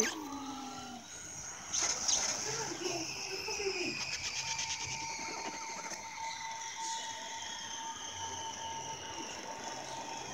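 Horror movie trailer audio playing through a phone's small speaker: eerie sound design with a brief voice-like sound early on, then a held tone under high whines that slowly fall in pitch.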